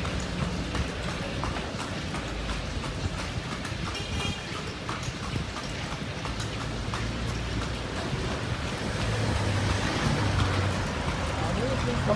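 Horse's hooves clip-clopping on a paved street as a horse-drawn carriage rolls along, with a low hum of road traffic under it that grows louder in the second half.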